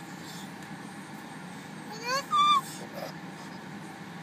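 A toddler's short, high-pitched two-part call, like her repeated "Daddy!", about two seconds in, over the steady low hum of a car's cabin.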